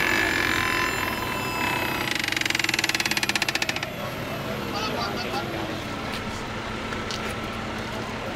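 Electric motor of a Stryker Power-PRO powered stretcher whining. The whine starts abruptly, turns into a fast, even buzzing pulse about two seconds in, and stops shortly before the four-second mark. A lower tone then slides downward.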